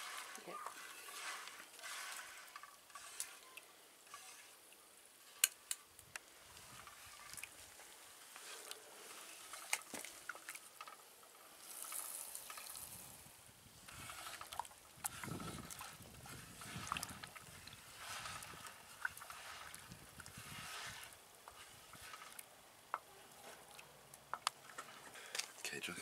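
Wooden spoon stirring a steaming stainless-steel saucepan of sodium hydroxide dissolving in water, with a soft sizzling bubble and occasional light clicks of the spoon against the pan. The lye's exothermic dissolving is heating the water toward the boil.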